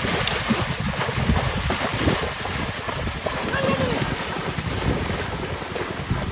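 Water splashing and sloshing as water buffalo and a wooden cart wheel churn through a flooded field, with wind buffeting the microphone.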